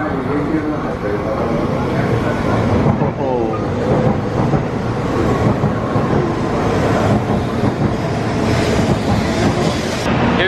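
Shinkansen bullet train moving along the platform: a loud, steady rush of air and rail noise that builds over the first few seconds, then holds.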